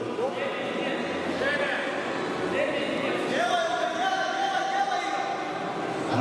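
Several people's voices talking and calling out at once in a large sports hall, one voice drawn out for about two seconds past the middle.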